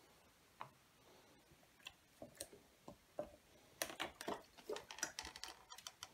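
Faint, irregular clicks and light knocks from a hand-built Bhaskara's wheel of part-filled plastic water bottles zip-tied to a 3D-printed hub, as it turns under test. The clicks are sparse at first and crowd together about four seconds in.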